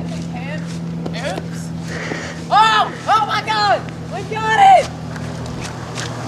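A vehicle engine running with a steady low hum, with people's voices calling out briefly in the middle.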